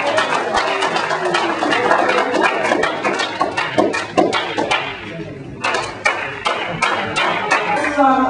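A group of people applauding and cheering together, with voices mixed into the clapping. About five seconds in it dips briefly, then picks up again.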